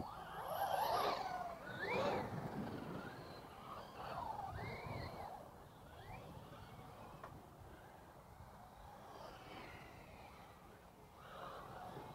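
Electric radio-controlled trucks running on a dirt track: motors whining up and down in pitch as they accelerate and back off, with tyres scrabbling and throwing loose dirt. Loudest in the first few seconds, then fainter as the cars move away.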